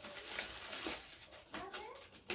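Plastic bag crinkling in short bursts as a boxed GoPro camera is pulled out of it and handled. A brief wavering call near the end.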